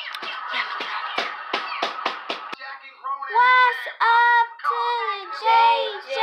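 A quick run of rhythmic hand claps, about three or four a second, for the first two and a half seconds. After that a child's high voice holds long drawn-out sung or called notes.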